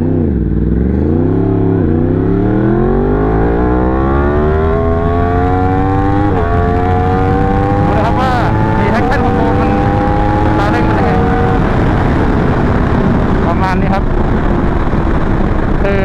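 Yamaha R1M's crossplane inline-four accelerating hard from a standing start at full throttle, with traction control on its lowest setting (level 1). The engine pitch climbs steeply, drops at quick upshifts about two and six seconds in, and keeps rising until the throttle is eased about eleven seconds in, when the revs sink away under wind rush.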